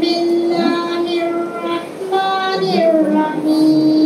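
A girl's voice through a handheld microphone, singing or chanting in long held notes with slow glides between them.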